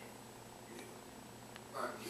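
A house cat purring steadily and low while being stroked, with a short voice-like sound near the end.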